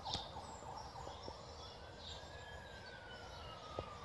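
Faint ambulance siren: one slow glide up in pitch and back down.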